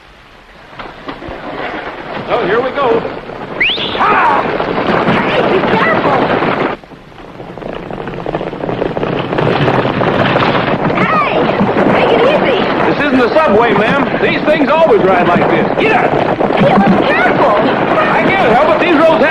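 A team of horses pulling a stagecoach at speed: a steady, loud rumble of hoofbeats and wheels. It builds up over the first couple of seconds, dips sharply for a moment about seven seconds in, then carries on loud.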